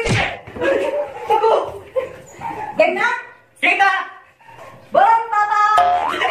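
Excited voices shouting, with a sharp smack right at the start and a high-pitched cry near the end.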